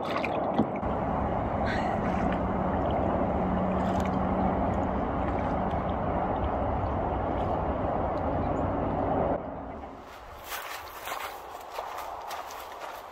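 Steady rushing noise of a kayak being paddled across still water, which cuts off about nine seconds in. After it come footsteps crackling through dry leaf litter and ferns.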